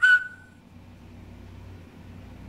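A high whistle-like note held for about half a second, then cut off. After it, quiet room tone with a low hum.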